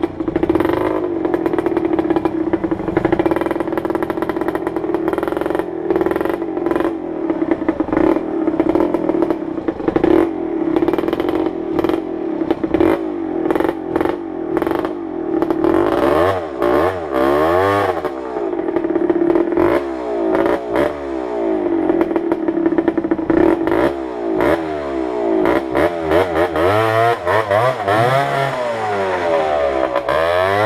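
Dirt bike engines running at low revs on a rocky trail climb. About halfway through, they start revving up and down again and again, with frequent clattering knocks of the bikes over rocks.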